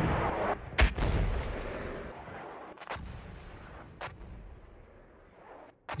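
Artillery shell explosion sound effects: the rumble of one blast dying away, a second sharp explosion under a second in, then two fainter booms around three and four seconds as the sound fades out.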